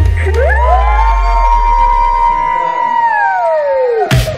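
An edited-in sound effect: a deep bass drop under a layered tone that slides up, holds steady, then slides down near the end.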